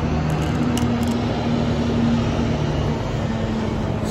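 Steady low mechanical hum with a couple of held low tones, with a few faint clicks in the first second.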